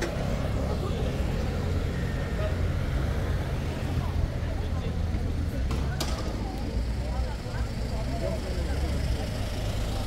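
Street traffic running steadily, a continuous low rumble of cars passing and idling, with faint voices of people nearby. A single sharp click sounds about six seconds in.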